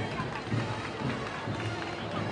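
Parade band music in the street, a slow low beat about twice a second, under the chatter of a crowd.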